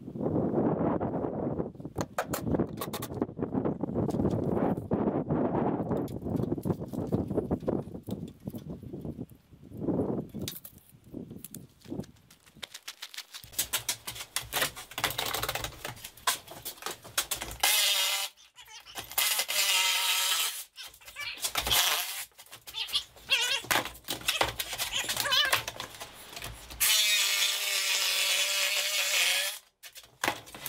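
Wind rumbling on the microphone, then a jigsaw cutting a curve in plywood in several bursts, with the longest, loudest cut near the end.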